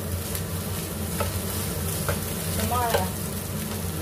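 Fried rice being stir-fried in a nonstick pan: a spatula scraping and turning the rice, with a light sizzle and a few short scrapes, over a steady low hum.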